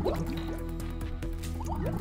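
Intro music with held low notes, overlaid with short rising bubbly bloops like water drops, several in quick succession.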